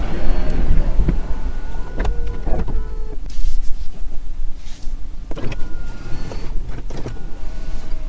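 Electric seat motor whirring in runs as the power front seat slides, with a few clicks between runs.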